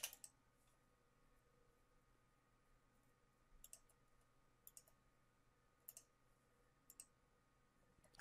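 Computer mouse clicking: a few faint, short clicks about a second apart, some in quick pairs, over near silence.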